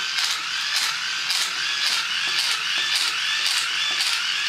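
CDR King hand-crank USB dynamo being cranked by hand, its plastic gears whirring steadily under the load of a USB light. The pitch rises and falls about twice a second, with each turn of the crank.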